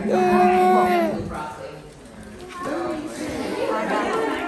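A person's voice holding one loud, steady call for about a second at the start, then group chatter.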